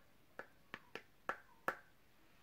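A makeup brush tapped against the hard eyeshadow palette: six sharp clicks, the last two the loudest.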